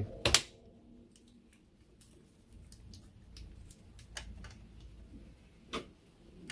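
Plastic clicks and taps as the pressure-fit stock cooling shroud on a Voxelab Aquila's hotend carriage is worked loose by hand: one sharp click just after the start, then a few faint scattered clicks, with a louder one near the end.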